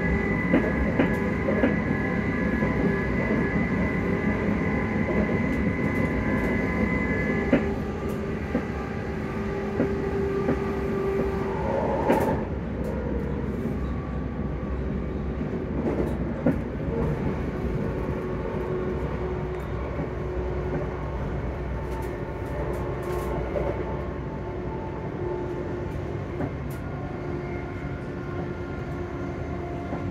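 Cabin noise of a ScotRail Class 334 electric multiple unit under way: a steady rumble of wheels on rail with scattered clicks. There is also a steady whine of several pitched tones from the traction motors. The loudest whine tones cut off suddenly about seven seconds in, with a brief louder knock a few seconds later, after which the ride continues slightly quieter.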